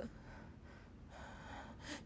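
A woman drawing a soft, audible breath in that ends in a short, sharp intake near the end.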